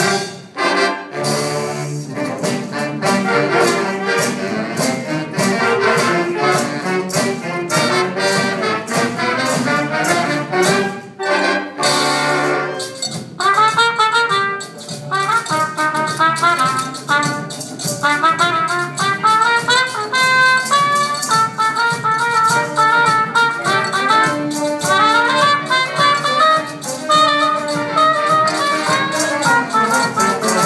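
A big jazz band of saxophones, trombones and trumpets with a rhythm section playing an up-tempo Latin jazz tune, with steady percussion strokes throughout. The full band plays in loud ensemble hits, breaking off briefly twice. From about a third of the way in, the band drops back and a single trumpet plays a solo line over the rhythm section.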